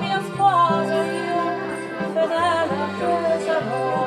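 Live folk music: a woman's voice singing over acoustic guitar and piano accordion, with the accordion holding low notes beneath the melody.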